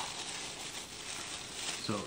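A plastic-wrapped metal fork and spoon being pulled out of the utensil holder of a stainless steel lunch box tray: crinkling plastic and light rattling of the cutlery against the steel.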